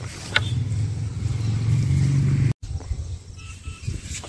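A hand hoe scraping and dragging loose, clod-filled soil, under a loud low engine-like rumble that cuts off suddenly about two and a half seconds in.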